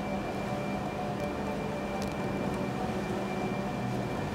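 Steady background room hum with a faint high whine, and two faint soft ticks about a second and two seconds in.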